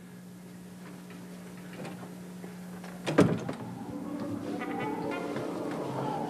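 A steady low hum, then a single knock about three seconds in, like a door being shut. Right after it a music cue swells in and holds.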